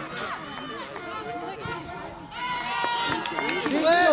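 Several voices shouting at once from players and onlookers, with one long, held shout rising in loudness from about halfway through and louder shouts near the end.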